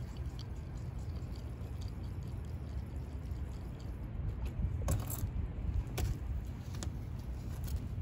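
Steady low outdoor rumble with three sharp light clicks in the second half, from a plastic plant pot being handled.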